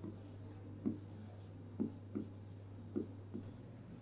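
Stylus writing on an interactive whiteboard's screen: about six soft, irregular taps as the pen meets the surface, with faint scratchy strokes between them, over a faint steady low hum.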